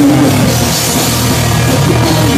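Pop punk band playing live and loud: drum kit, electric guitars and bass guitar together in a steady, continuous passage, heard through a camera phone's microphone.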